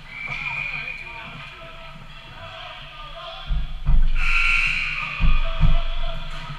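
Ice hockey rink sound from a camera on the goal: several dull thumps about halfway through and again a second later as the goalie knocks against the net, over distant voices and high-pitched shouts from the rink.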